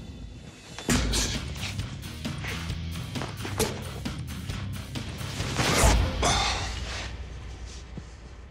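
A war golok chopping repeatedly into a hanging pig carcass, a series of hacks with the heaviest blow about six seconds in, over background music.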